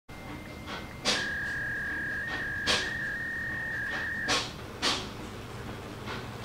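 Brother IntelliFAX 775 fax machine making its connection tones: a steady high beep, then a slightly lower tone that flips between two close pitches for about three seconds before cutting off, the typical fax handshake. Several sharp mechanical clicks from the machine are mixed in, and they carry on after the tones stop.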